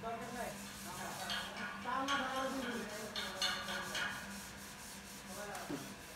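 Hydraulic car parking lift with an SUV on its steel platform in operation: a steady low hum runs under intermittent gliding squeaks and rubbing, and one squeak falls in pitch near the end.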